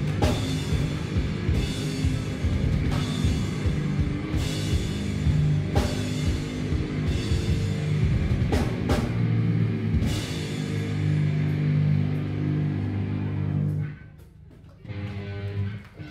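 Heavy rock band playing live: distorted electric guitars, bass and a drum kit with repeated cymbal crashes. The song stops about fourteen seconds in, followed by a short final burst of guitar.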